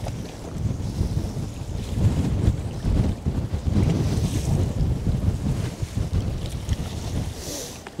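Strong wind buffeting the microphone, a low gusty rumble that swells and eases, over choppy lake water slapping around the boat.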